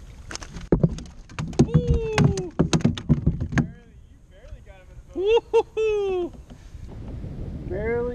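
A quick run of sharp knocks and clicks from gear being handled on a fishing kayak while a fish is being brought in, with a few short raised voice calls near the middle.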